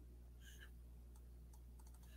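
Near silence with a few faint computer clicks while a text box is set up for typing.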